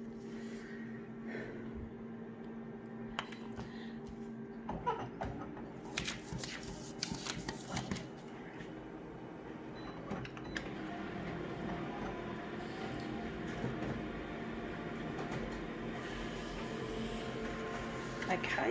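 Office multifunction copier running with a steady hum, with clicks and knocks of the scanner lid and paper handling in the first half. From about ten seconds in a steadier whirr as the machine feeds and prints the copy.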